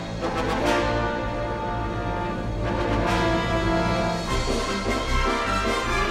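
Dramatic orchestral film-score music played by a full orchestra, with accented hits near the start and about halfway through.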